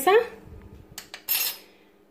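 A metal spoon clicking and scraping against a blender cup as mayonnaise is spooned in: a few light clicks, then a short scrape about a second and a half in.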